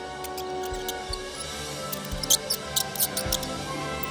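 Background music with a series of short, high squeaks from about halfway through: a cartoon mouse squeaking sound effect.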